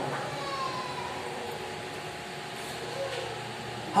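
A pause in speech: a steady low background hum and hiss of the room, with a faint voice-like sound early on.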